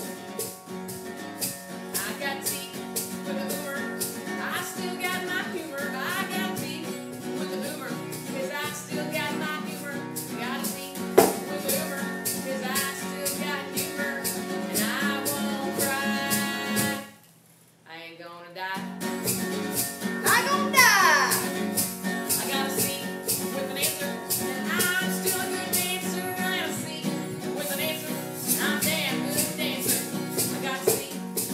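Acoustic guitar strummed steadily while women sing a country-style song. The sound cuts out almost completely for about a second and a half a little past the middle, then the strumming and singing resume.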